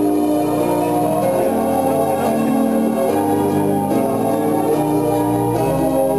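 Music of held, organ-like electronic keyboard chords, each sustained for a second or two before shifting to the next.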